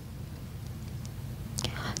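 Steady low hum of the hall's microphone and PA system during a pause in a speech, then a short breath into the lectern microphone near the end.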